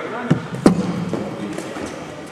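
A cricket ball in a practice net: a faint knock as it lands on the mat, then a loud, sharp crack about two-thirds of a second in as it strikes the batter's bat or pads.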